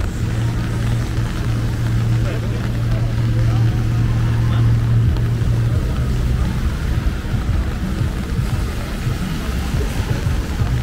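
Street traffic on wet pavement: a steady low engine hum for about the first six seconds, with cars driving past on the rain-soaked road.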